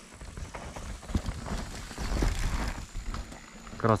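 A downhill mountain bike riding down a dirt track and past, its tyres scrabbling over dirt and rocks with the rattle of the bike, loudest about two seconds in.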